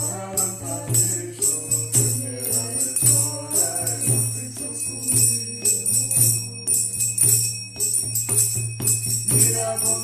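Devotional kirtan music: a mridanga drum keeps a steady low beat about once a second while metal hand percussion jingles on every stroke, with a faint sung line underneath.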